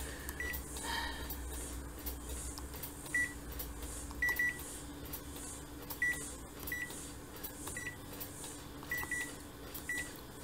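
Konica Minolta bizhub C353 copier's touch panel giving short high beeps as its screen buttons are pressed, about ten beeps, some in quick pairs, over a low steady hum.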